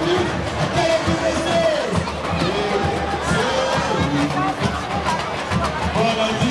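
Street carnival bloco music: a samba percussion band playing on, with many voices singing and shouting over the noise of a large crowd.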